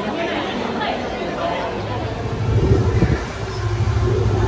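Indistinct chatter of a crowd walking through a busy station passageway, joined about halfway through by the low rumble of city street traffic.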